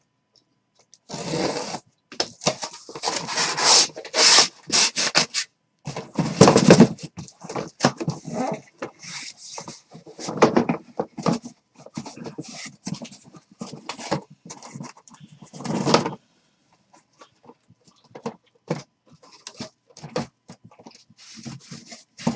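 A sealed cardboard shipping case being cut open and pulled off the boxes inside: loud bursts of cardboard and tape scraping and rubbing, heaviest in the first seven seconds, then shorter scrapes and clicks that thin out after about sixteen seconds.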